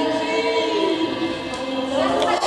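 Music of several voices singing long, slowly gliding held notes, like a choir.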